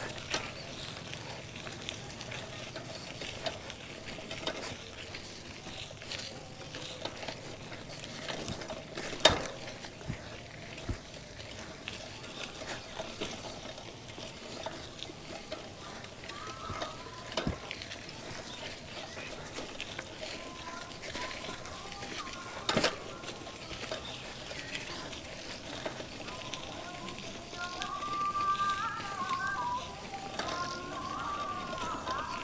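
Bicycle rolling along a rough dirt road: a steady crackle of tyres on grit, with a few sharp knocks as the bike goes over bumps and ruts.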